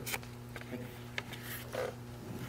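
A steady low electrical hum with a few faint clicks and rustles, as of handling at a microphone-laden podium.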